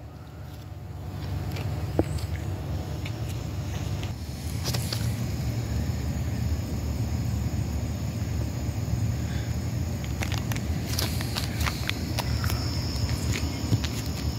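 Outdoor night ambience: a steady low rumble, a faint steady high insect trill, and a few scattered clicks and knocks from handling the camera and stepping about.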